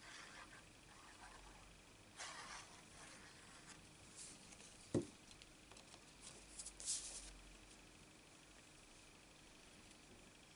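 Faint rustling and sliding of paper as patterned cardstock is handled and pressed down onto a card panel, with one short soft knock about halfway through.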